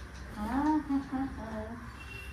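A person humming a tune: a few held, gliding notes starting about half a second in.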